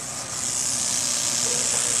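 Southwestern speckled rattlesnake (Crotalus pyrrhus) rattling its tail, a steady high-pitched buzzing hiss, set off by being touched on the tail.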